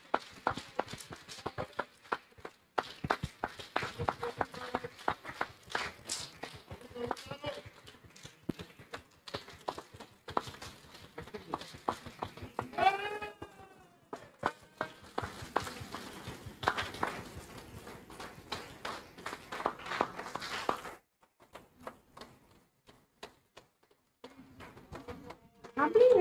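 An audience clapping, with voices mixed in; one voice calls out in a wavering tone about halfway through. The clapping stops a few seconds before the end.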